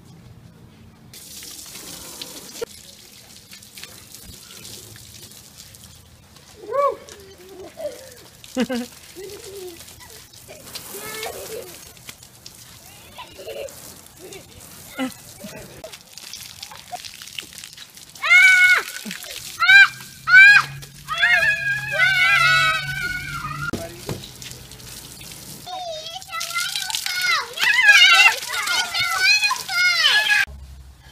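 Water hissing from a garden hose spray, with children's voices over it: a few faint calls and laughs early, then loud squeals and shrieks in bursts past the middle and again near the end.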